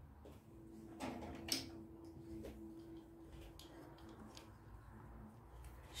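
Quiet room with a few soft knocks and rustles from a person moving close to the microphone, and a faint steady hum for the first few seconds.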